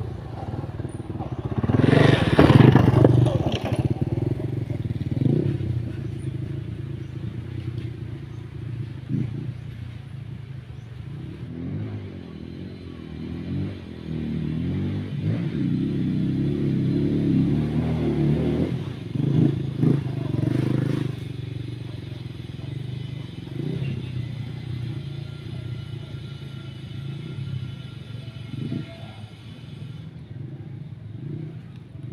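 Dirt bike engine running off in the grove, revving up and down, loudest about two seconds in and again for several seconds past the middle.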